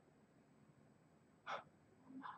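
Near silence, with one short, quick intake of breath about one and a half seconds in.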